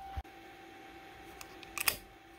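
Faint steady hum with a soft low thump shortly after the start, then a quick cluster of sharp clicks near the end.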